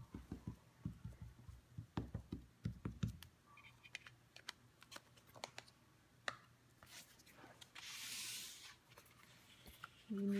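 A VersaMark ink pad tapped repeatedly onto a clear photopolymer stamp on an acrylic block: a quick run of soft taps and clicks for about three seconds. After that come a few scattered clicks and handling noises, then a brief sliding hiss as a stamping mat is moved across the work surface.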